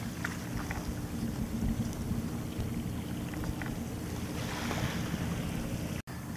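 Wind rumbling steadily on the microphone of a kayak out on open salt water, over faint water sounds. A soft rush of water comes about four and a half seconds in.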